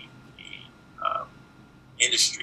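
Two brief, garbled voice sounds from a man on a video call, about half a second and a second in, during a pause in his speech.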